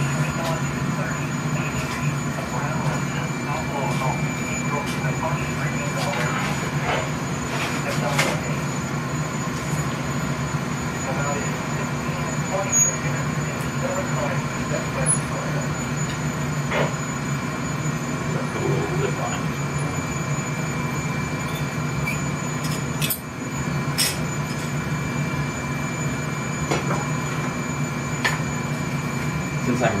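Steady hum and drone of a glass-shop furnace and its burner blower, with a few light clicks of the steel blowpipe being rolled along the bench arms.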